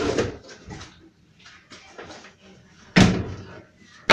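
A fridge door being shut at the start, then soft handling and rustling noises and a sharp knock about three seconds in.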